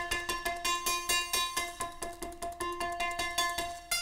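Teenage Engineering OP-1 synthesizer's string engine, a physical model of a string, sounding a fast run of short plucked notes, about five a second, mostly on one pitch, while a knob is turned to change its tone.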